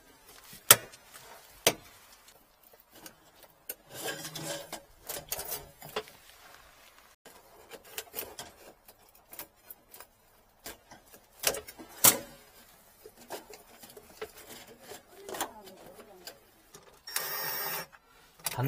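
Scattered clicks and knocks of metal band hose clamps and hoses being handled and fitted. About a second before the end, a cordless driver runs briefly, tightening a hose clamp.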